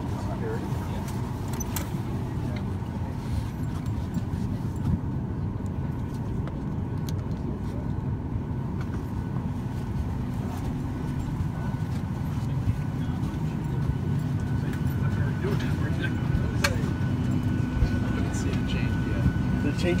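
Steady low hum of an airliner cabin's air system during boarding, with a few sharp clicks and the murmur of passengers in the background.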